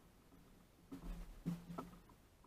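A few soft knocks and bumps of handling aboard a fishing kayak, starting about a second in after a near-quiet start.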